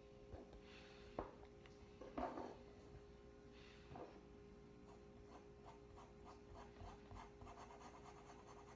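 Faint scratching of a fountain pen's 1.1 mm stub nib on paper: a few separate strokes, then a quicker run of light, short strokes in the second half.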